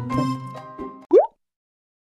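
Background music with sustained notes fades out about a second in, followed by a short, quick rising 'bloop' pop sound effect.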